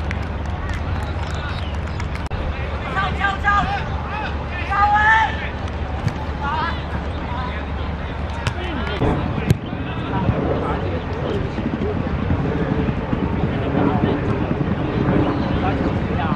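Shouts and calls from several voices on an outdoor football pitch, with a low wind rumble on the microphone, then a steadier murmur of voices. A single sharp knock comes about nine seconds in.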